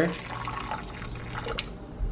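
Water being poured from a cup into a ceramic bowl of whisked matcha paste, a quiet steady splashing.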